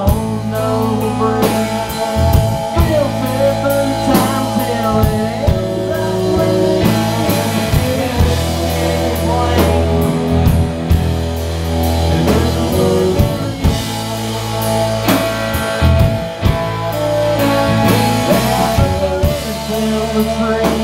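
Live rock band playing: two electric guitars, an electric bass and a drum kit, with held bass notes that change every few seconds under a steady beat.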